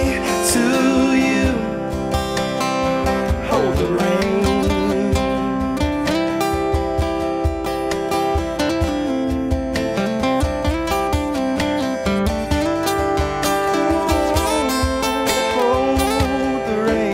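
Instrumental break of an acoustic country song: two acoustic guitars strummed and picked, one playing a melody line over the other's rhythm. A held sung note ends about a second in.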